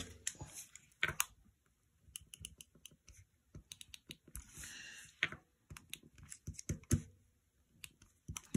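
A correction tape dispenser handled and run over a paper sheet: scattered light clicks and taps, with one short scratchy swipe near the middle as the tape is drawn across the paper.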